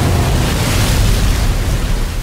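Loud rushing water over a deep low rumble, a dense steady wash of heavy surf and falling water.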